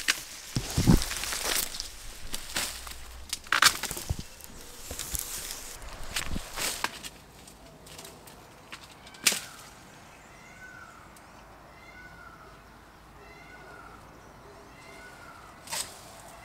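Dry giant reed stalks rustling and cracking as canes are cut with loppers and pulled out of a dense reed bed, busiest in the first half, with a single sharp snap about nine seconds in.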